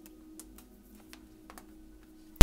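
A few faint, scattered clicks and taps, about five in two seconds, over a faint steady hum.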